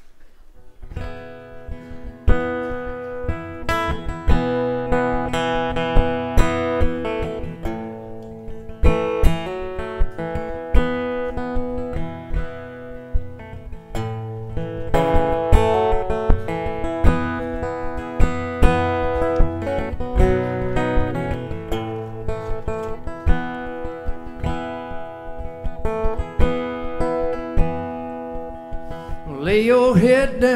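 Acoustic guitar playing the instrumental opening of a lullaby, a steady run of plucked chords and notes. A man's singing voice comes in right at the end.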